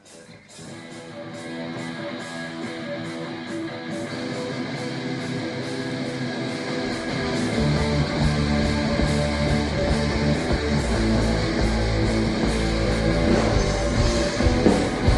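Live hard rock band starting a song: electric guitars swell in from near quiet and build, with a heavy low end of bass and drums coming in about halfway through and growing louder toward the end.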